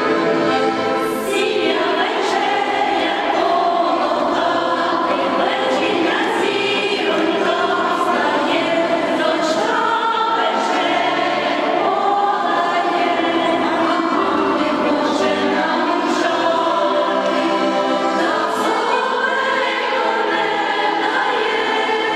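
Women's folk choir singing together in several voices. An accordion's held chord ends about a second and a half in, as the singing takes over.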